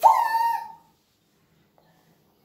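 A woman's high "woo!" exclamation that rises quickly and is held steady for just under a second.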